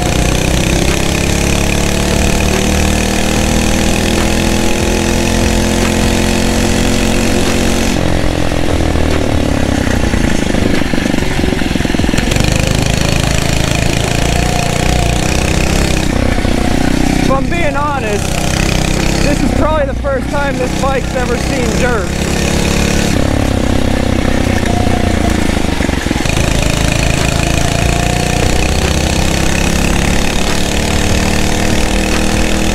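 79cc four-stroke single-cylinder engine of a Phatmoto Rover motorized bicycle running under way, its pitch rising and falling as the throttle is worked.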